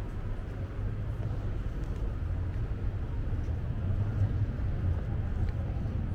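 Outdoor city ambience: a steady low rumble of distant traffic.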